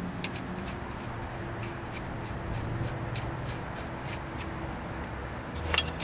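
Faint light clicks and rubbing of hands fitting a brake caliper and its bolt, with a low steady hum underneath.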